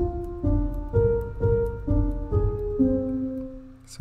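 Scaler 2's felt piano sound playing back a short MIDI melody with chords that was generated from typed words, about seven notes at roughly two a second, the last one held and fading.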